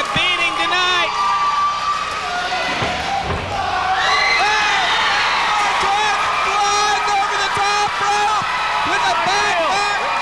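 Wrestling crowd shouting and yelling over one another at a ringside brawl, with a single dull thump about three seconds in.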